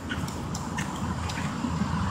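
Small ocean waves washing up on a sandy beach: a steady low rush of surf.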